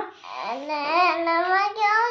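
A young girl's voice in a drawn-out singsong, holding long notes whose pitch slowly rises.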